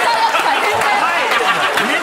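Several people talking over one another in a jumble of voices.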